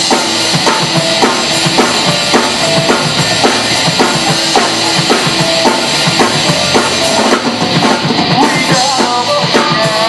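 A live rock band playing loudly, driven by a drum kit with fast, steady kick and snare strikes under guitars and bass. A wavering higher melody comes in near the end.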